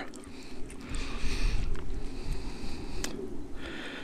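Wind rumbling unevenly on the microphone over a steady hiss, with a single faint click about three seconds in.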